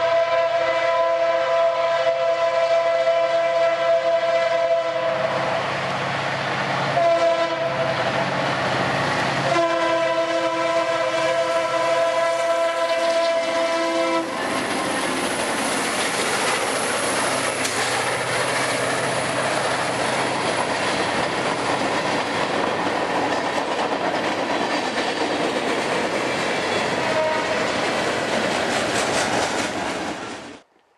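Norfolk Southern PR43C diesel locomotive's multi-chime air horn blowing for a grade crossing: a long blast, a short one about seven seconds in, then another long blast. The horn sounds something like a Nathan K3LA. From about fourteen seconds the horn stops, and the lead locomotives and train roll past close by with loud engine noise and the clickety-clack of wheels over rail joints.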